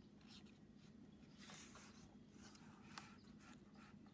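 Near silence with faint paper rustling as a picture book's page is turned.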